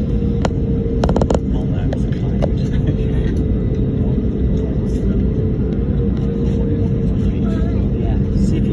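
Airliner cabin noise during taxi: a steady low rumble of the engines and airflow with a constant hum, and a few sharp clicks about a second in.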